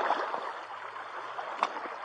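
Shallow creek water running over a gravel bed, a steady rushing, with a single light click shortly before the end.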